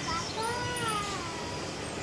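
A single drawn-out call that rises and then falls in pitch, lasting about a second, over a steady background hiss.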